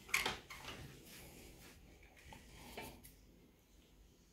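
A few light clicks and knocks from a bird feeder being handled as its roof is put back on. The loudest comes just after the start, and fainter ones follow.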